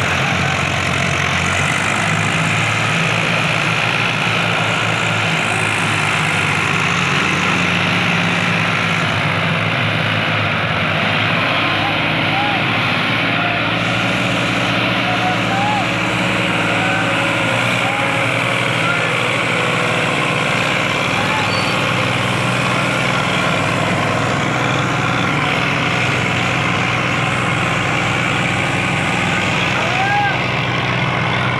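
Two three-cylinder diesel tractors, a Mahindra 265 DI and a Sonalika DI 35, running hard under load as they pull against each other on a chain in a tug-of-war; a loud, steady engine drone, with people's voices shouting over it.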